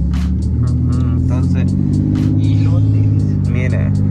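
Car engine and road noise heard from inside the cabin while driving, a steady low drone that swells slightly near the middle, with faint voices in the background.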